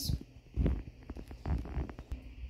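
Low thuds and light knocks of a hand-held phone being moved and carried, picked up by its own microphone.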